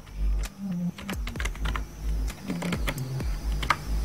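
Typing on a computer keyboard: a word tapped out as an uneven string of separate key clicks.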